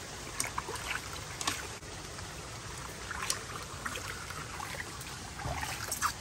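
Water trickling and dripping in a shallow plastic wading pool, with a few faint splashes and drips scattered through a steady wash.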